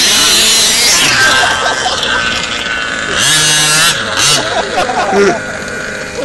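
Small two-stroke petrol engine of a 1/5-scale RC baja buggy revving up and down repeatedly as the buggy climbs through loose sand, then running quieter over the last second or two.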